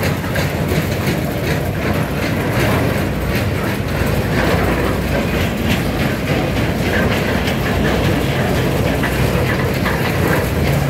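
A string of linked steel barrier sections carrying mesh security fence, towed over asphalt: a steady rumble with a continuous rattle and many small clanks from the sections and their joints, a train-like clickety-clack.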